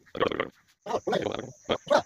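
A person's voice in short, indistinct bursts of mumbled syllables, about three or four groups, with no clear words.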